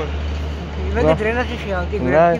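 A man talking in the open street from about a second in, over a steady low rumble of road traffic.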